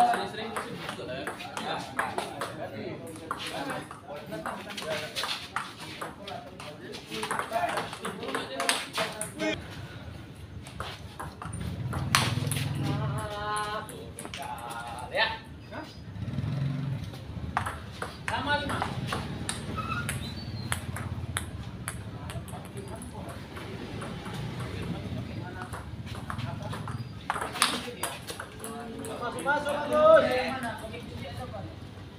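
Table tennis rallies: the ball clicking sharply off paddles and the table in quick runs of hits, with people talking nearby.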